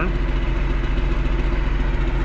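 A tractor's diesel engine idling steadily.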